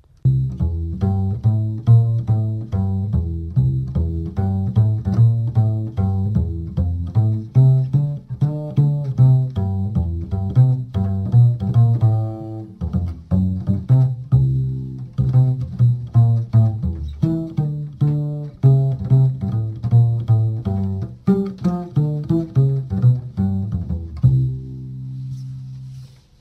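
Double bass (contrabass) played pizzicato: a long run of short plucked low notes in a steady rhythm, closing on one longer ringing note near the end.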